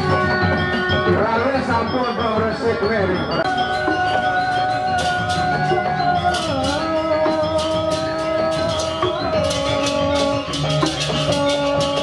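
Balinese gamelan music, with metal percussion struck in a steady pattern under long held notes that slide in pitch now and then.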